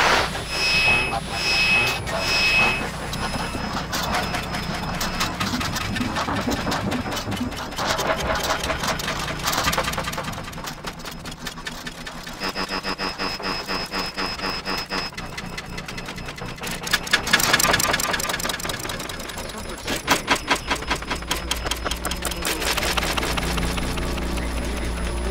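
Shortwave radio sounds: a rapid buzzing pulse with whistling tones, three short beeps in the first few seconds and a steady whistle in the middle, and snatches of a broadcast voice.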